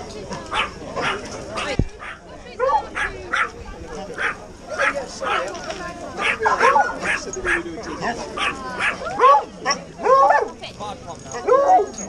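Several dogs barking and yipping in a crowd of leashed dogs, in many short, separate calls that come more often in the second half, with people talking in the background.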